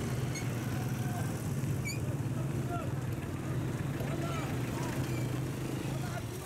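Steady low hum of vehicle engines running as loaded pickups and a tractor move slowly past, with faint voices in the background.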